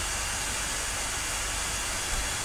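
Steady background hiss with a low rumble underneath, even throughout with no distinct events: the room and microphone noise of a webcam recording.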